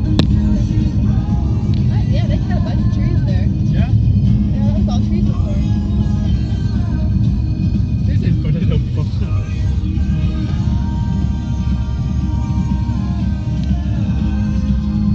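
A car driving at road speed, heard from inside the cabin as a steady low rumble of tyres and engine. The car radio plays music underneath.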